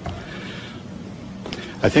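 A pause in a man's speech: a steady low hum and faint room noise, then the man starts speaking again near the end.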